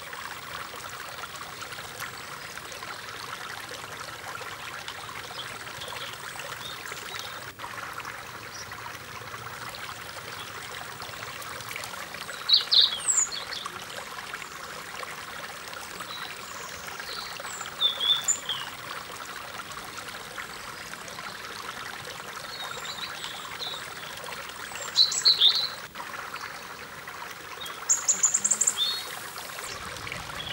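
Steady rush of a flowing forest stream. Short, high bird chirps come over it in four brief bouts, around the middle and toward the end, and are the loudest sounds.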